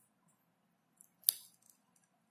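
Near silence with one sharp click about a second and a quarter in, just after a faint tick.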